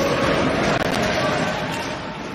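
Ice hockey arena sound during live play: a steady wash of crowd noise, with a sharp knock from the ice about a second in.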